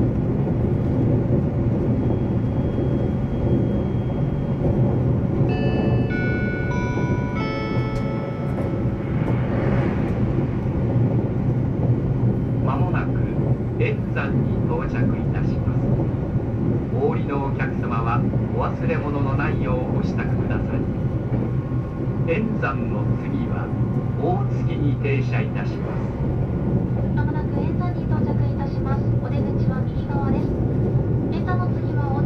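Steady low rumble and hum of a JR East E353 series electric express train running, heard inside a motor car. About six seconds in, a short run of electronic tones at changing pitches sounds, and from about twelve seconds on muffled voices come through over the running noise.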